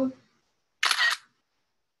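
A single short camera-shutter sound about a second in: the shutter effect of a screenshot being taken of the video call on the count.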